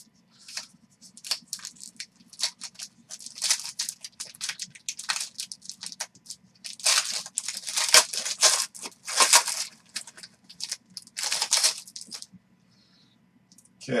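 Foil wrapper of a 2020 Panini Origins Football card pack crinkling and tearing as it is ripped open by hand: a long run of short crackles, loudest about halfway through, stopping a couple of seconds before the end.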